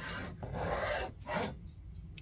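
Flat steel file scraped along the edge of a wooden bellows block from a wood whistle calliope, cleaning old glue off the surface in a few short strokes, the longest about half a second in.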